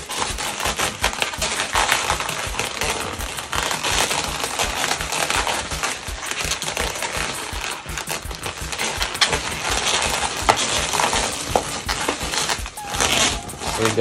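Inflated Qualatex 260Q chrome latex twisting balloons being pinched, twisted and pressed together by hand: a steady run of latex squeaks, rubbing and crackles, with a few short squeals near the end.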